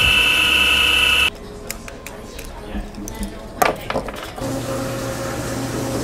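Electric skateboard drive motors spinning the wheels on a test rig with a loud steady high-pitched whine, which cuts off suddenly about a second in. Quieter workshop clicks and knocks follow, and a low steady machine hum begins near the end.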